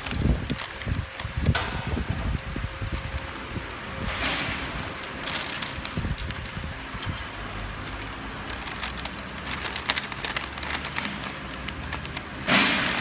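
Paper label web rustling and crinkling as it is pulled and fed by hand through a labeling machine's rollers, with a few low handling thuds in the first couple of seconds.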